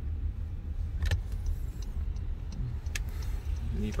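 Low, steady rumble of a car driving slowly, heard from inside the cabin, with a couple of faint clicks or rattles.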